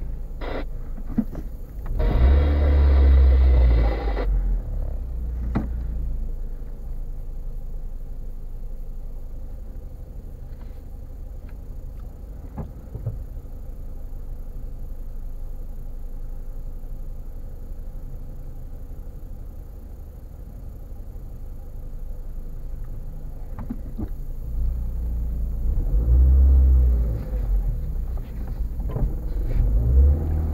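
Car engine idling, heard from inside the cabin as a steady low rumble. It swells louder for about two seconds near the start and again near the end.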